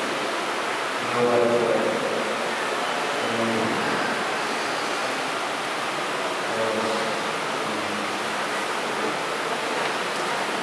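Steady hiss of background noise. A faint, distant voice comes through in short snatches about a second in, again around three and a half seconds, and near seven seconds.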